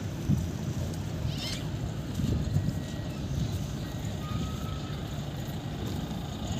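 Low, uneven rumble of wind buffeting the microphone outdoors, with a faint brief thin tone about four and a half seconds in.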